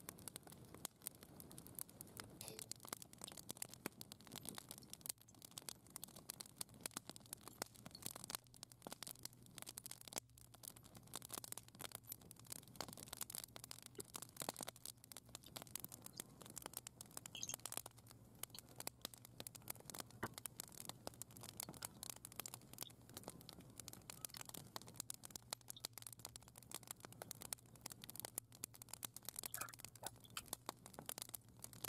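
Faint, dense crackling and light rustling go on throughout, over a low steady hum that comes in about two seconds in.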